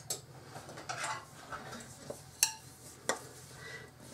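A few scattered sharp clinks and knocks of kitchenware being handled: a mixing bowl of brownie batter and a rubber spatula picked up. The loudest clink comes a little past halfway.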